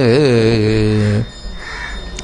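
A man's voice singing a devotional line, holding one long note that wavers and then settles on a steady pitch. It breaks off a little over a second in, leaving only faint background noise.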